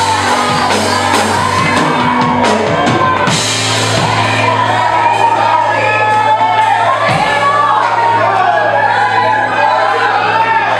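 Live worship music: a man's singing voice over band accompaniment with steady sustained bass notes.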